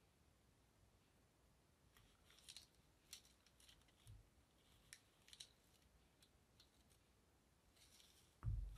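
Faint scraping and clicking of a small plastic spatula pressing lightweight spackle into a mini glass mug, a scatter of short scrapes starting about two seconds in, otherwise near silence.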